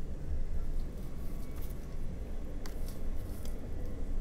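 Hands flexing and squeezing a cured silicone rubber mold, with faint rubbing and a few soft clicks over a steady low hum.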